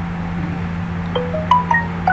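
A steady low hum, joined in the second half by a handful of short, clear ringing notes at different pitches, like a chime.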